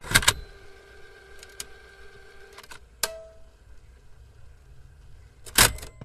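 Logo sting sound effects: a sharp hit at the start with held tones ringing on for a couple of seconds, a few lighter clicks, and a second loud hit near the end.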